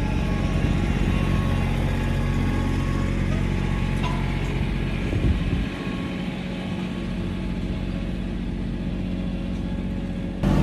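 Compact farm tractor's engine running steadily as the tractor drives past, its sound stepping down a little over halfway through as it pulls away.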